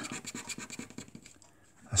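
A coin scratching the coating off a paper scratchcard in quick, short strokes, which stop about one and a half seconds in.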